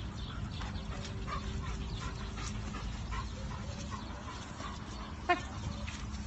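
A dog barks once, short and sharp, a little past five seconds in, with faint short high sounds scattered before it over a steady low rumble.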